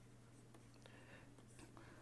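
Near silence with the faint scratch of a pen writing words on paper.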